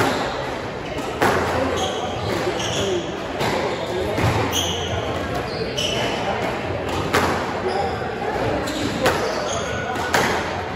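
Squash rally: the ball is struck by the rackets and hits the walls with sharp cracks about every one and a half seconds, ringing in the hall. Between the hits, court shoes squeak briefly on the hardwood floor.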